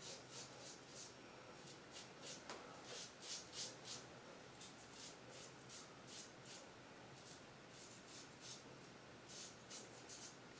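Gem Jr single-edge safety razor scraping over stubble on the neck in a faint run of short, quick strokes during a touch-up pass. The strokes are loudest about three to four seconds in.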